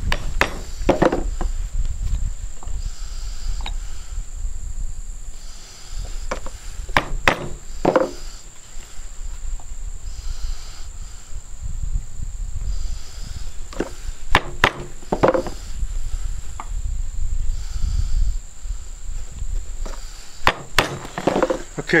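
Scattered sharp knocks and taps on a wooden workbench as leather pieces and hand tools are handled and set down, a dozen or so spread out with some in quick pairs. A low rumble and a steady high whine run underneath.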